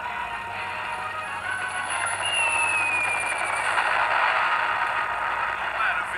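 Cartoon soundtrack music and sound effects played through a television speaker. A noisy rushing effect builds in loudness, with a brief falling whistle tone about two seconds in.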